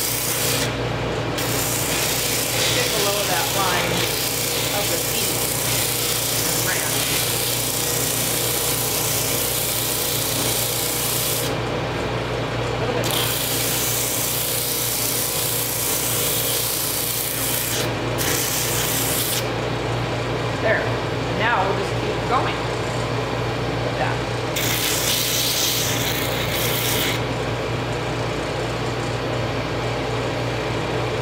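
Pneumatic drum sander running with a steady motor hum while small intarsia wood pieces are held against the spinning sanding sleeve. The hiss of sanding comes and goes several times as the pieces touch the drum and lift off, with a few short squeaks about two-thirds of the way through.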